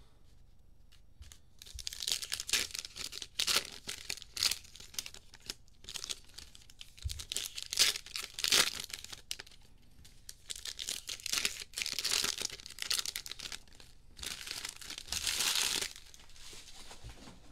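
Hands tearing open and crinkling foil trading-card packs and handling the cards: a string of short crackling rustles, with a longer crinkling stretch near the end.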